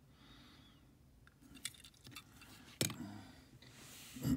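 Quiet handling of a small die-cast metal toy truck: a few light clicks, then one sharp tap nearly three seconds in as it is set down on the tabletop.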